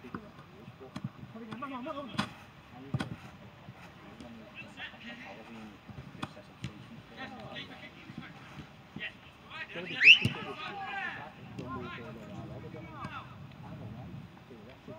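Players' distant shouts and calls across an outdoor football pitch during a practice game, with a few sharp thuds of the ball being kicked around two to three seconds in. One loud, rising shouted call stands out about ten seconds in.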